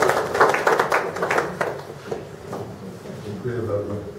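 Audience applauding with quick, dense clapping that dies away about two seconds in, with voices underneath. A man's voice starts faintly near the end.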